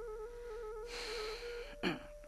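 Quiet background music: a single held melody line with small trills, stepping up in pitch near the end. About a second in, a soft breath is drawn, with a short sharp sound just after.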